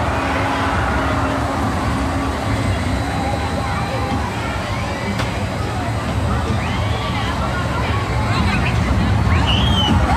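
Amusement-park crowd chatter over a steady low rumble of a small SBF Visa figure-eight spinning coaster running, with one voice calling out near the end.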